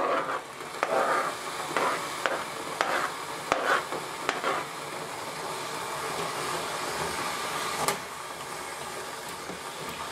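Metal spoon scraping and clinking in a stainless steel saucepan as orange zest is stirred into cranberries, several strokes in the first half and a sharp click near the end, over a steady hiss from the pan of hot sugar syrup on the heat.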